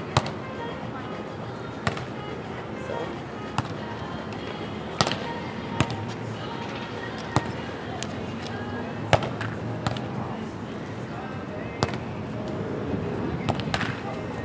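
A volleyball being struck by players' hands and forearms during a sand volleyball rally: about ten short, sharp slaps at irregular intervals a second or two apart, over a background murmur of voices.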